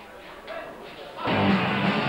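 Live punk rock band crashing into a song about a second in: distorted electric guitars, bass and drums start together at full volume after a quieter stretch with faint voices.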